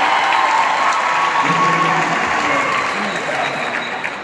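Audience applauding in a concert hall, with voices mixed in, the applause slowly dying down toward the end.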